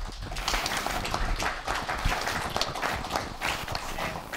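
Audience applauding: many hands clapping at once in a dense patter that eases off near the end.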